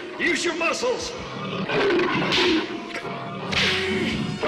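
Cartoon struggle sound effects: snarls and roars from an animated armoured tiger caught in vines, in several short bursts with whip-like swishes between them, over background music.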